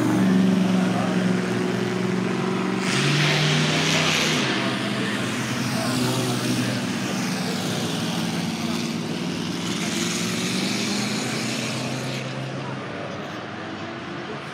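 Classic cars driving up a hill-climb course in turn: a 1957 Chevrolet goes past with its engine rising in pitch as it accelerates, then a vintage open-wheel racing car follows.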